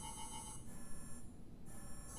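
Quiet background music: a sustained synthesizer bed with a quick run of about five short, ringtone-like beeping pulses in the first half second.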